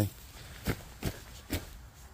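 Three soft footsteps on a grassy pond bank, about half a second apart, over a low background rumble.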